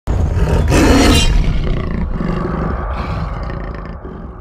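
Big cat roar sound effect, loudest about a second in and then fading away over the next few seconds.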